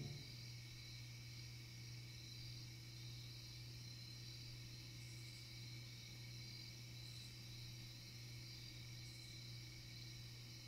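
Near silence after the song ends: a faint, steady low hum with light hiss from the recording's noise floor.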